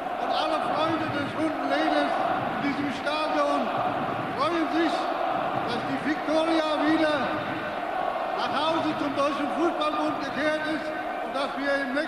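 A man's speech into a microphone, amplified over a public-address system.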